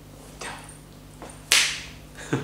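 A single sharp finger snap about one and a half seconds in, dying away quickly, over a steady low room hum. A fainter, softer noise comes about half a second in.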